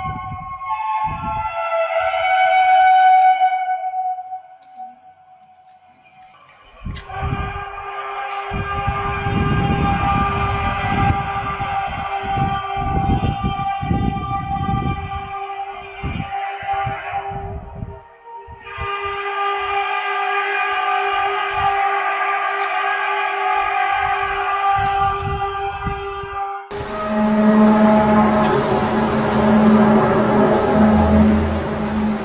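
A long, steady, horn-like drone of unknown origin with several overtones, the kind of 'trumpet in the sky' sound captured in viral phone videos, with wind buffeting the microphone. It drops away for a few seconds after about four seconds in and dips again briefly past the middle, and near the end a louder, lower drone takes over.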